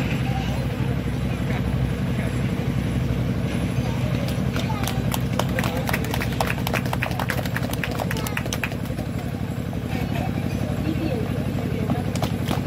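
Hand clapping from a small crowd, starting about four and a half seconds in and dying away a few seconds later, over background voices and a steady low hum.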